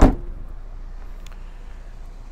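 Trunk lid of a 2017 Buick Verano sedan slammed shut by hand: one loud thud right at the start, then only faint steady background noise.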